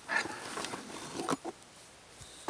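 Rustling of a canvas rucksack as a hatchet is pulled out of it, followed by two or three light knocks as the tool is handled.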